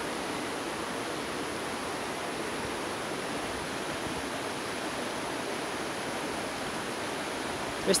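Steady, even rushing background noise that holds at one level without pauses or distinct events; a man's voice starts speaking at the very end.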